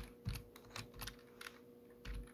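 Computer keyboard keys being pressed at an unhurried pace, a few faint separate clicks as a terminal command is typed.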